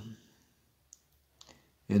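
Near silence between spoken phrases, broken by a few short, faint clicks: one about a second in and two close together around a second and a half. A man's voice trails off at the start and begins again at the end.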